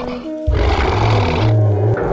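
A loud, rough animal roar sound effect starts about half a second in and fades after about a second, with a low rumble carrying on beneath. It plays over background music with sustained notes.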